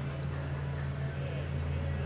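Steady low hum, with the hoofbeats of a horse cantering on the soft dirt floor of a covered arena.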